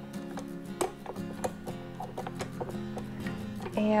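Background acoustic guitar music: plucked notes over held low tones.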